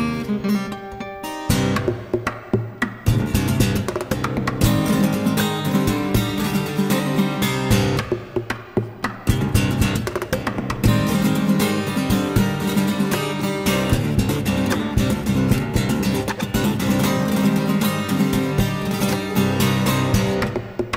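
Solo acoustic guitar played in a fast percussive fingerstyle: plucked runs and strummed flurries mixed with sharp slaps and taps on the strings and body. The playing thins briefly about a second in and again around eight seconds.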